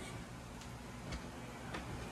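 Quiet room with faint, evenly spaced ticks, a little under two a second.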